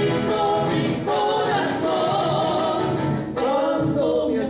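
Live Argentine folk song: several male voices singing together in harmony over strummed acoustic guitars.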